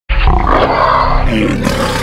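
A loud animal-like roar used as an opening sound effect, starting abruptly and lasting about two seconds.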